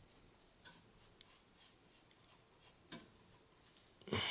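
Near silence with faint scraping and a few soft ticks from a small spreader working thermal compound across the CPU's metal heat spreader; the sharpest tick comes about three seconds in.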